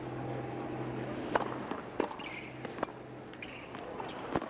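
Tennis ball knocking off racket strings and the hard court in a serve and the first shots of a rally: several sharp pops, roughly a second apart, over a low stadium crowd murmur.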